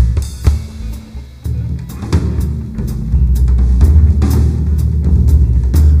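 Live rock band playing an instrumental break between sung lines: drum kit with kick and snare to the fore, over bass guitar. It drops back for a moment about half a second in and fills out again from about two and a half seconds in.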